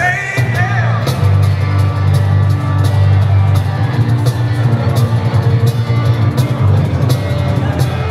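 Live acoustic trio playing without singing: an electric bass holding strong low notes and an acoustic guitar over a steady beat slapped on a cajon.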